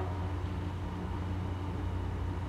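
Steady low hum of room tone, unchanging throughout.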